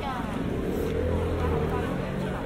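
A motor vehicle's engine running close by, a steady low hum that swells and then eases off, with people talking in the background.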